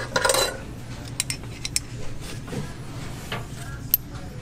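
Metal axle bearings and pressed-steel flange brackets being handled at a pegboard display, clinking against the metal hooks and each other in a few sharp clicks.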